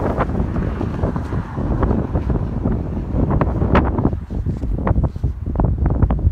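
Wind buffeting a handheld phone's microphone, a loud uneven rumble, with a few short knocks and rustles in the second half from the phone being handled.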